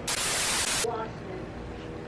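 A burst of TV static: an even white-noise hiss lasting just under a second that cuts off abruptly, used as an editing transition effect. Quieter room sound and a brief bit of voice follow.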